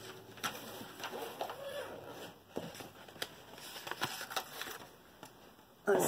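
Protective cover film on a diamond-painting canvas being peeled back from the sticky glue and handled, crinkling with scattered sharp clicks and crackles.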